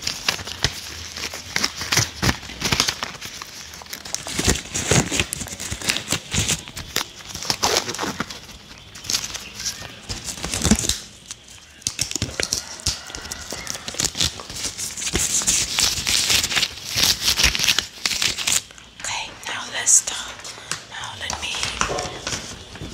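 White disposable rubber exam gloves being pulled on and stretched right at the microphone: rubbery crinkling and rubbing, broken by many sharp snaps.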